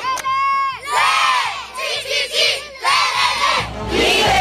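A group of children shouting and cheering together in three loud bursts about a second long each, after a single held shout at the start.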